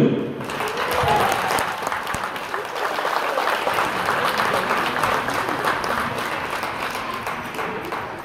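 Audience applauding, a steady spread of clapping that eases off near the end.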